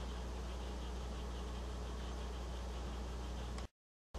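Steady low electrical hum under a faint even hiss. A faint tick near the end is followed by a short gap of total silence.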